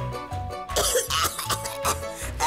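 A young woman coughing repeatedly on cigarette smoke, a run of harsh coughs starting about two-thirds of a second in, over background music with a steady bass beat.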